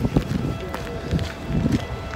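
Footsteps and handling noise from a phone carried while walking, with voices in the background and a faint steady hum in the second half.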